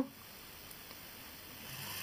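Faint hiss, then about a second and a half in a low steady hum and hiss rise as the Venus 2000's DC gear motor starts turning the crank that strokes its rubber bellows chamber.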